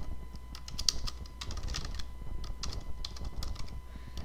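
Typing on a computer keyboard: an irregular run of keystroke clicks, with a steady low hum underneath.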